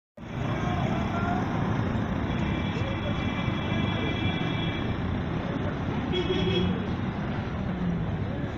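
Busy street traffic noise: engines of auto-rickshaws and buses running, with people's voices mixed in.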